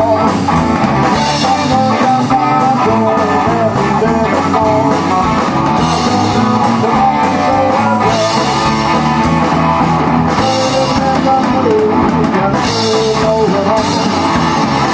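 Live blues band playing an instrumental boogie: electric guitar over drum kit and bass guitar, with no singing.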